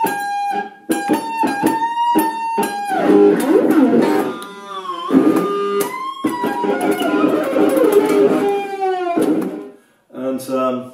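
Stratocaster-style electric guitar playing a climbing pentatonic lead run. It opens with quick repeated picked notes for about three seconds, then becomes a denser passage with a note sliding down in pitch about five seconds in. It stops just before the end.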